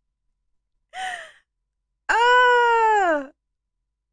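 A woman's short breathy exhale, then a long drawn-out voiced sigh that holds steady for about a second and falls in pitch at the end.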